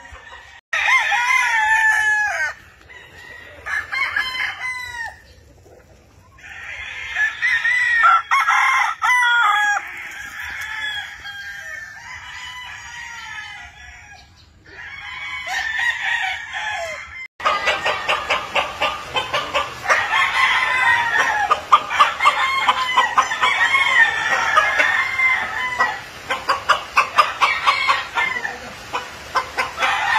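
Gamecocks (roosters) crowing over and over, with several birds calling in turn and overlapping, mixed with clucking. About halfway through, the sound cuts abruptly to a denser chorus of overlapping crows.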